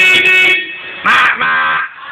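Forklift horn sounding in two short blasts about a second apart, each a steady flat tone.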